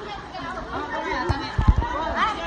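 Several people chattering and calling out over one another, with a few low thumps on the microphone a little over a second in.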